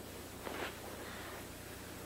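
Quiet room tone with a low steady hum and a faint soft rustle about half a second in.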